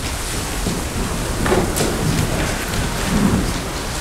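Steady hiss-like rushing noise with a couple of faint knocks about one and a half seconds in.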